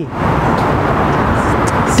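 Loud, steady rushing noise with no clear voices in it, starting and stopping abruptly.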